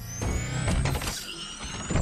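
Film sound effect of a giant robot transforming: rapid metallic clicking and clanking over a low rumble, with high whines that rise slowly in pitch.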